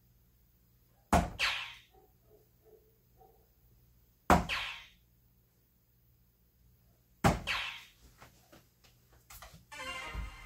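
Three soft-tip darts striking a Granboard electronic dartboard, about three seconds apart. Each is a sharp thunk followed at once by a short burst of the board's hit sound effect, and small clicks come near the end.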